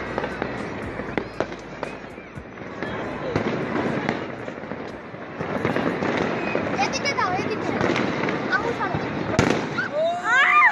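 Fireworks and firecrackers going off in a continuous scatter of cracks and pops, with one sharper bang near the end.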